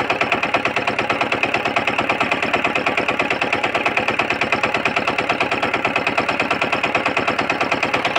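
Small tilling-machine engine running steadily with a fast, even clatter of about ten beats a second. The owner calls the engine smoky and its compression loose.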